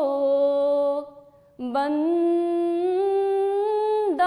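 A woman singing an Urdu naat unaccompanied, in long drawn-out held notes. There is a short break for breath about a second in, then a long note that slowly rises in pitch.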